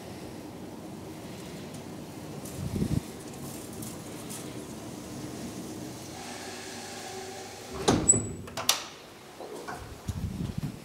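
DEVE up-side-down telescopic hydraulic elevator travelling, with a steady hum from the hydraulic drive. A loud clunk about eight seconds in as the car stops, a sharp click just after, and then the quieter start of the door sliding open at the end.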